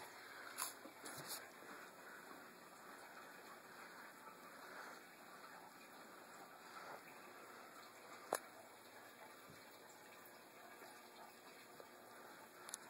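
Faint chewing of dry saltine crackers, with a single sharp click about eight seconds in.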